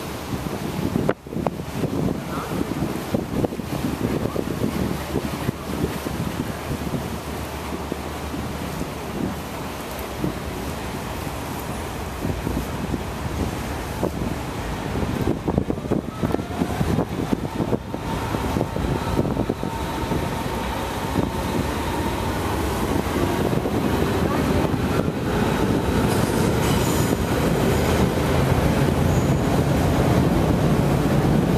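Train running across a railway bridge overhead, a steady rumble mixed with wind noise on the microphone, growing louder toward the end.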